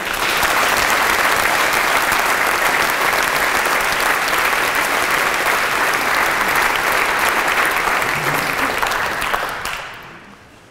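A large audience applauding steadily, dense clapping that fades out near the end.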